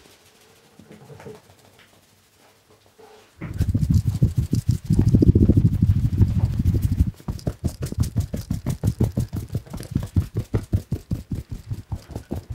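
Hands massaging a man's hair and scalp. Faint rustling at first, then about four seconds of loud, quick rubbing and scrunching of the hair. Then fast, even tapping on the head at about five strikes a second.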